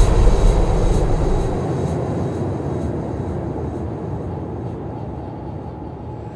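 A noisy electronic rumble slowly fading away. Its deep bass cuts off about a second and a half in.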